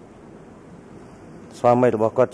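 A pause in a man's speech over a microphone, with only a faint steady hiss. He resumes speaking about one and a half seconds in.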